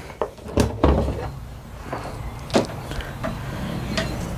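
Plastic parts of a Ridgid shop vac head and its muffler attachment being handled. There are a few separate clicks and knocks, the sharpest about two and a half seconds in.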